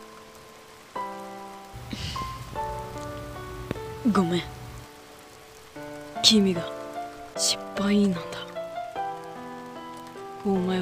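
Steady rain with soft background music of held notes and chords. A few brief sliding vocal sounds rise over it, the loudest about six seconds in.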